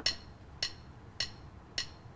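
Casio CDP-200 digital piano's lesson count-in: four evenly spaced metronome clicks, a little under two a second.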